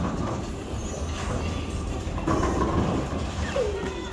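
Bowling ball rolling down a wooden lane, a steady low rumble, over the general noise of a bowling alley.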